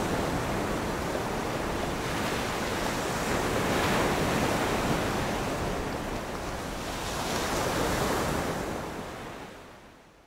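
Ocean waves and surf washing in a steady rush, swelling twice and fading out near the end.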